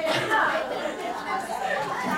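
Several people talking at once in a meeting room: overlapping, indistinct chatter.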